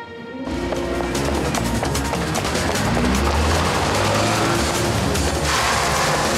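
Background film-score music with a strong low rumble, coming in about half a second in.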